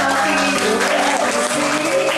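Electronic keyboard holding sustained chords while an audience applauds. A single voice slides up and falls back in pitch about midway.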